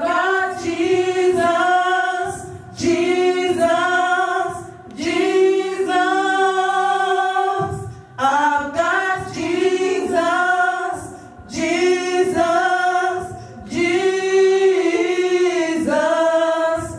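Women's voices singing a gospel song together in harmony into microphones, as a small choir. The sung phrases follow one another with short breaks between them.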